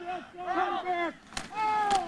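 Men's voices talking, with a single brief knock about a second and a half in.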